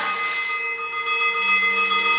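Chamber ensemble of flute, trumpet, guitar, harp and percussion playing several long held tones together. The notes follow a struck attack right at the start and hang steady with little movement.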